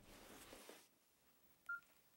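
Near silence, then a single short electronic beep from a mobile phone near the end, as the call is ended.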